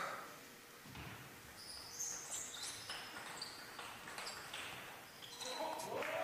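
Table tennis rally: the ball clicking off the rackets and the table in a quick run of light hits, with players' shoes squeaking on the hall floor.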